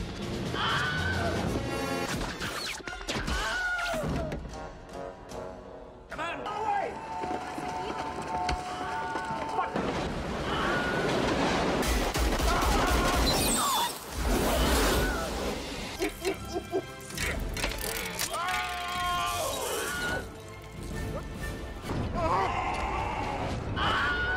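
The Wilhelm scream, the stock film sound effect of a man's brief scream, heard several times in a row from different film scenes. It plays over film soundtrack music and action noise such as crashes.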